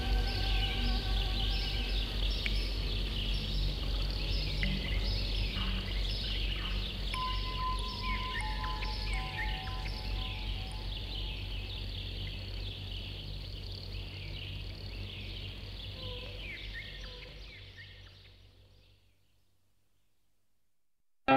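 Dense chorus of birds chirping over a low, steady synth drone, with a few held high notes in the middle; the whole sound fades out over the last few seconds into silence.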